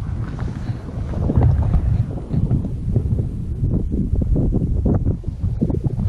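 Wind buffeting the camera's microphone: an uneven, gusting low rumble.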